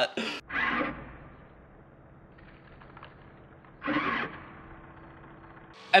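Faint steady hum of the confetti cannon's small electric fan running, with two short bursts of a man's voice, about half a second in and about four seconds in.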